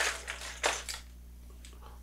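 Hard plastic fishing lures and their treble hooks clicking and clattering together as they are handled while tangled, a few sharp clicks in the first second.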